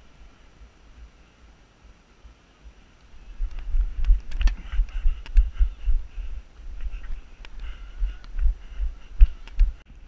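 Low, irregular thuds and rumble on a head-mounted GoPro's microphone, starting about three and a half seconds in, with a few faint sharp clicks among them.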